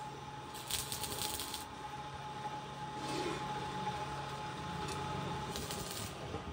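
Stick-welding arc crackling in short bursts as tack welds are laid on an iron-sheet pan: one burst lasting about a second just after the start, another near the end. A steady electrical hum runs underneath.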